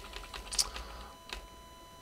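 A few separate computer-keyboard key clicks, the sharpest about half a second in and another just past a second in.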